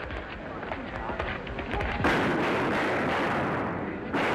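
A rapid string of five revolver shots from about halfway through, run together into one continuous blast with no clear gaps, on an old, noisy film soundtrack.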